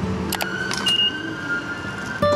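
Train station ambience by the ticket gates, with a sharp clack about half a second in and a short high electronic beep about a second in.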